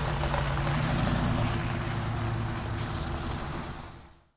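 Steady noisy rumble with a faint low hum, fading out gradually and dying away at the end.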